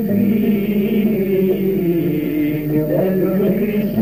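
Constantine malouf (Arab-Andalusian) song: a vocal line sung in long, held, wavering notes with musical backing.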